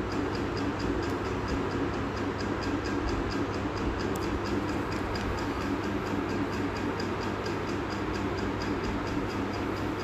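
Steady background noise with a low hum and a fast, even faint ticking, about five ticks a second.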